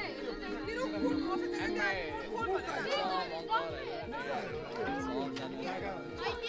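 Several people chattering at once over background music with long held notes.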